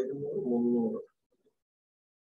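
A bird's low cooing call lasting about a second.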